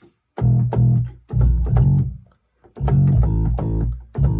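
Bass voice played on a Yamaha arranger keyboard: three short phrases of low notes with brief gaps between them.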